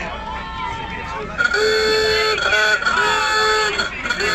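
A car horn honking at a steady pitch: one long blast about a second and a half in, two quick toots, then another long blast and a short one near the end, over people talking.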